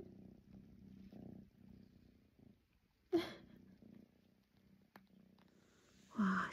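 A kitten purring faintly and steadily for the first two seconds or so, then a brief sharp sound about three seconds in.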